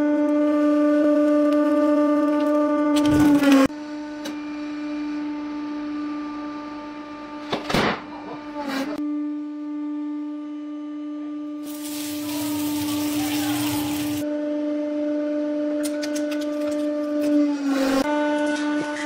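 Hydraulic press pump humming steadily at one pitch while the ram crushes things: a loud burst about three seconds in as a pomegranate gives way, two sharp cracks near eight seconds, a long noisy squashing from about twelve to fourteen seconds as a pot of tomatoes is crushed, and a run of crackling clicks near the end as metal is flattened.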